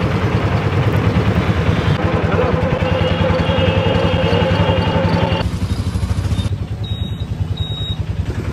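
Small auto-rickshaw engine running with a fast, steady chug in street traffic. The sound changes abruptly about five and a half seconds in.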